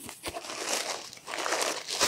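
Bubble wrap crinkling and rustling as a wrapped item is pulled up out of a cardboard box, in two swells of rustling with a few small clicks at the start.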